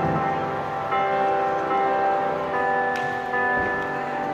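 Digital keyboard playing slow, sustained chords with a bell-like tone, with a new chord struck about a second in and another shortly before three seconds.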